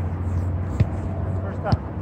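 Soccer ball kicked on grass during a passing drill: a dull thud about a second in and another near the end, over a steady low hum.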